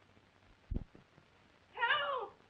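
A single dull, low thud, then near the end a loud, high cry that rises and falls in pitch.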